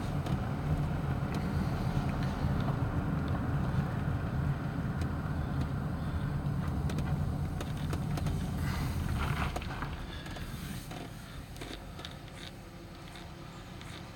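Car cabin noise while driving: a steady low engine and road rumble heard from inside the car, fading to a quieter hum about ten seconds in as the car slows.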